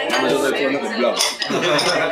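Dishes and cutlery clinking at a busy dinner table, with voices talking over them.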